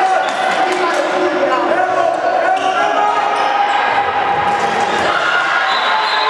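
A handball bouncing on a wooden sports-hall floor, with voices calling across the hall and the echo of a large hall throughout.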